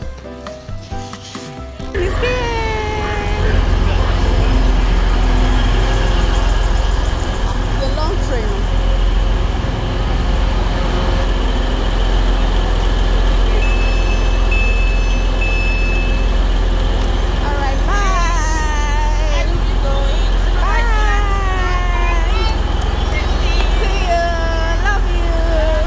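Electric passenger train at the platform: a loud low rumble that comes in suddenly about two seconds in and carries on, with a run of high door-warning beeps about midway as the doors work. Falling pitched tones come and go, near the start and several times near the end.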